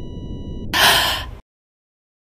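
A steady high electronic tone over a low rumble stops about two-thirds of a second in, and a loud, sharp gasp follows for under a second; then all sound cuts off dead.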